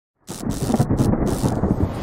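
Thunderstorm sound effect: a heavy low thunder rumble with a rain-like hiss, starting a fraction of a second in.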